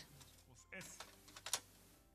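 Faint clicking of a computer keyboard, a few keystrokes about a second in, under a faint murmur of voices.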